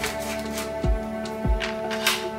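Background music with a low drum beat under held, sustained tones.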